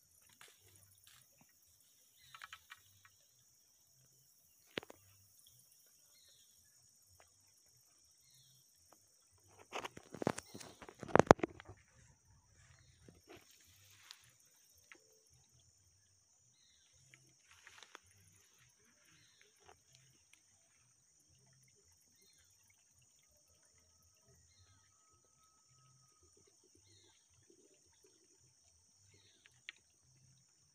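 A steady high-pitched insect drone with scattered faint rustles and clicks. The loudest part is a cluster of knocks and rustling about ten seconds in.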